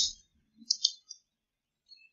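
Three quick, sharp clicks close together, a little under a second in.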